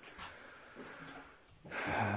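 A man breathes in audibly near the end, in a pause between sentences, over faint room noise.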